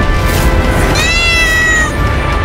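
A cat's meow: one call of about a second that starts about a second in and falls slightly in pitch, over dramatic background music.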